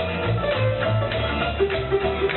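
Band music with plucked guitar, a moving bass line and percussion, steady and even in level.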